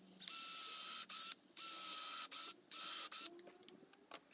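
Ryobi cordless drill running a small bit into Merbau hardwood in three short bursts, each with a steady motor whine, the last one shortest. A few light clicks follow near the end.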